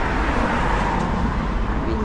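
Road traffic: a car passing close by, its tyre and engine noise swelling and fading over the first second or so, above a steady low rumble of the street.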